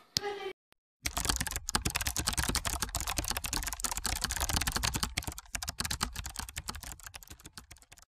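Rapid keyboard typing clicks, a typing sound effect, beginning about a second in and thinning out and fading toward the end.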